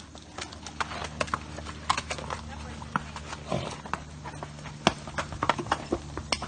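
Horses' hooves clopping and clattering on rocky trail ground, as an irregular run of sharp strikes.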